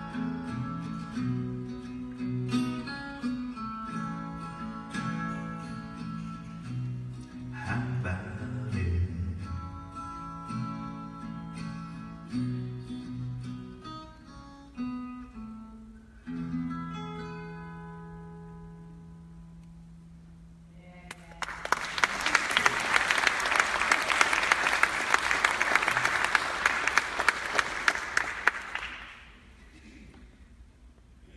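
Acoustic guitar playing the instrumental close of a song, picked melody notes over a moving bass line, ending on a low chord that rings out for several seconds. Then audience applause breaks out and goes on for about eight seconds before dying away near the end.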